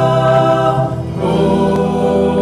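Live worship music: a band with electric guitars, bass and keyboard accompanying many voices singing a slow, sustained line, with a brief drop in loudness about a second in before the next chord comes in.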